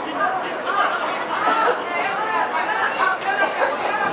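Spectators talking close by, several voices overlapping in steady chatter.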